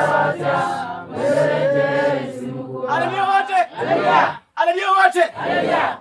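Congregation singing a short chorus together over a low held voice; about three seconds in the singing stops and a man's voice calls out in short phrases.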